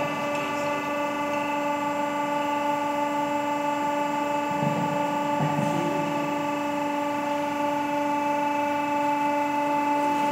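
Automatic tilting permanent-mould casting machine running a dry cycle without metal. It gives off a steady pitched hum from its drive, with a couple of soft knocks about five seconds in.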